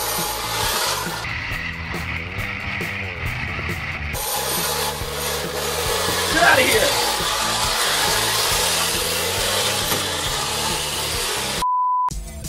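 A loud rasping noise over background music. Near the end it cuts out suddenly and gives way to a single steady test-pattern beep.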